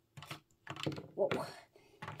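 Small plastic toy pieces clicking and tapping against a plastic toy car as they are handled and set into its back, a few light clicks in quick succession.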